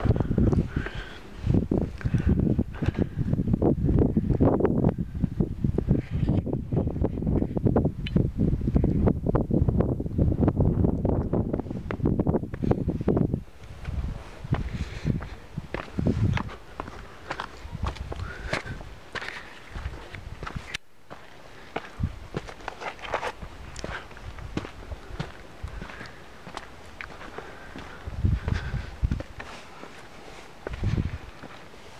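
Footsteps and scuffs on bare summit rock while walking, with a heavy low rumble on the microphone for about the first half, then quieter scattered steps and knocks.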